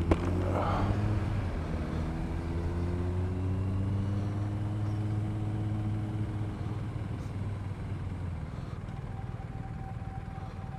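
BMW R1250 RT motorcycle's boxer-twin engine running steadily under wind noise. Its note eases off and fades after about seven seconds.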